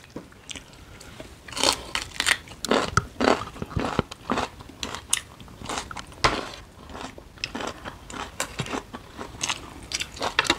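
Close-up eating sounds: irregular crisp crunches and chewing, as raw vegetables are bitten and chewed, with a sharper crunch about three seconds in and another about six seconds in.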